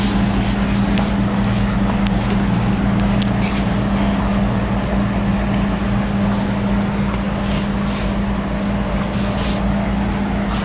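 A steady hum with a constant low tone under an even hiss, holding level throughout. Faint soft swishes of a cloth wiping a whiteboard come through now and then.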